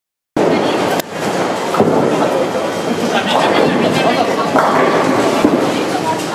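Busy bowling alley din: balls rolling down the lanes and pins clattering, with sharp clacks about a second in and again shortly after, over people talking.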